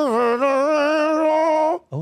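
A person holding one long hummed, sung note with a slight waver, ventriloquist-style with the lips kept still; the pitch dips briefly at the start, then holds steady until it stops near the end.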